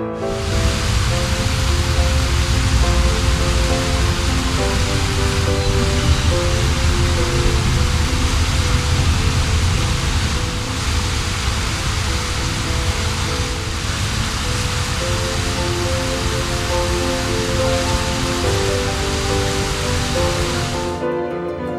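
Steady rushing of flowing water with a low rumble, cutting in suddenly at the start, over soft background music with sustained notes.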